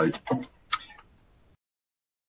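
A man's voice finishing a sentence over a webcast feed, a short click about three-quarters of a second in, then the audio drops to dead silence.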